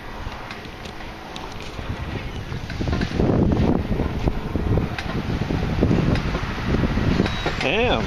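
Wind buffeting the microphone outdoors, growing stronger about three seconds in, in uneven gusts.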